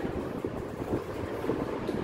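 Chalk writing on a blackboard, small irregular taps and strokes over a steady low background rumble.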